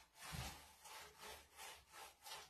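Small paint roller rolled back and forth over a wooden board, a faint swishing rub repeated about twice a second.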